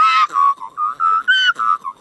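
A person imitating an Australian magpie's call: a run of short warbling, whistle-like notes, with a higher note about a second and a half in.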